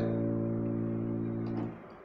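Electronic keyboard holding an A-sharp major chord, which rings steadily and slowly fades, then cuts off near the end as the keys are released.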